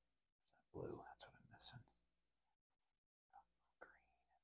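A man's brief muttered, half-whispered words about a second in, with a sharp hiss among them, then two faint clicks near the end.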